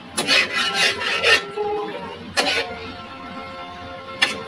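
A spatula scraping and tossing sisig around a wok: a quick run of rasping strokes in the first second and a half, then another scrape a second later. Background music with held notes plays underneath.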